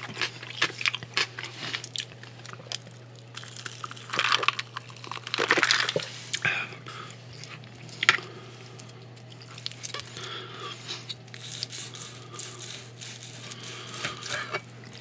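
Close-miked chewing of bacon-wrapped steak, with wet clicks and smacks from the mouth, loudest about four to six seconds in. In the second half, a knife and a wooden fork work through the meat on the board, with soft scraping sounds.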